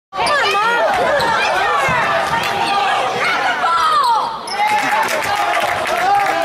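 Basketball players' sneakers squeaking on a hardwood gym floor: many short, quick, high-pitched squeals overlapping. A ball bounces and spectators call out under them.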